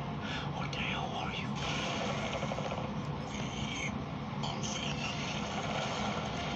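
Breathy, whispered voice sounds in short hissy stretches over a steady low hum, muffled as if played from a screen and re-recorded.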